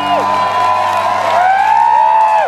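Electric guitar notes through an amplifier, swooping in pitch: sustained tones rise, hold, then drop away sharply, twice in quick succession, like tremolo-bar dives.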